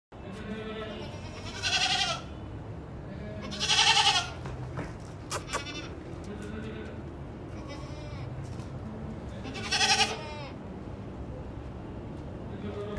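Teddy goats bleating three times: loud, wavering calls each under a second long, about two seconds in, about four seconds in and about ten seconds in. Quiet voices murmur in the gaps.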